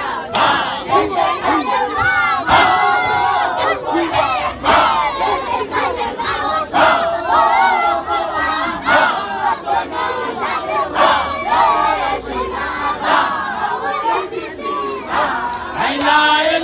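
A group of men's voices chanting together in a rhythmic Sufi dhikr, loud and forceful, with a sharp accented stroke about every two seconds.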